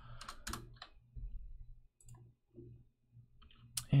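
Clicks of a computer keyboard and mouse as a search word is typed and an option is selected: a few quick keystrokes in the first second, then scattered faint clicks, with one sharper click just before the end.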